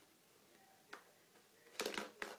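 Small clicks from a plastic water bottle being handled, against a quiet background: one faint click about a second in and a short crackle of the plastic near the end.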